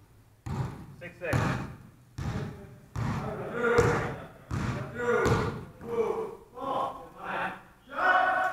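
A basketball dribbled on a hardwood gym floor, bouncing about once every three quarters of a second, each bounce ringing and echoing in the hall.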